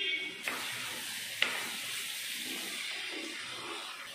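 Masala chicken fry sizzling in a non-stick pan just uncovered, while a spatula stirs and scrapes through it. There is a brief metallic ring at the start and one sharp clack of the spatula on the pan about a second and a half in.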